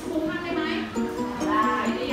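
A song with a singing voice: a melody of short stepping notes over a steady held note, with a sung voice wavering above it.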